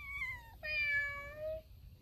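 A cat meowing twice: a short, high meow that falls slightly in pitch, then a longer, lower meow.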